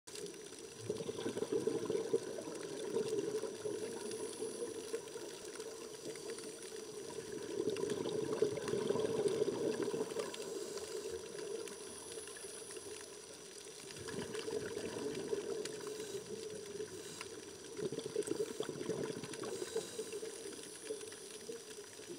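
A scuba diver's regulator and exhaled bubbles gurgling underwater, coming in surges every five or six seconds with each breath.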